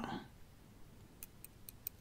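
Metal knitting needles clicking together, a string of faint, quick ticks starting about a second in.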